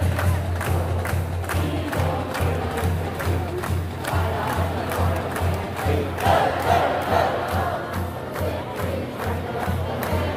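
Marching band playing a steady drum beat, about two to three beats a second, over the noise of a stadium crowd. The crowd and band swell louder about six seconds in.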